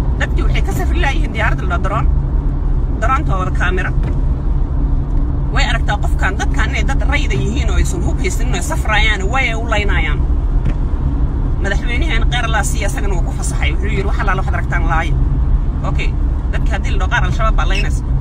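A woman talking in bursts over the steady low rumble of a car, heard from inside the cabin.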